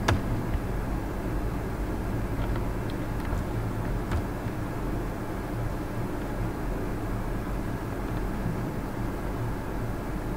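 A steady low hum of background noise, with a sharp click at the very start and a few fainter clicks, the clearest about four seconds in.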